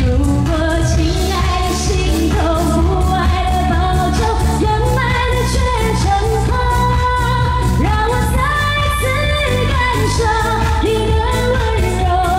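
A woman singing a Chinese pop ballad live into a handheld microphone, her held notes wavering with vibrato, over instrumental accompaniment with a steady low beat.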